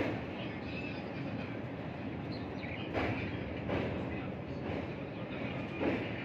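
Train running across a steel truss bridge: a steady rumble heard from the open doorway, with a few short, irregular thumps over it.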